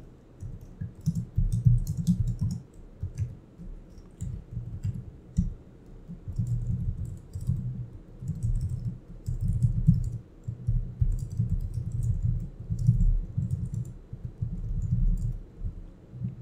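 Typing on a computer keyboard in irregular runs of keystrokes with short pauses between them.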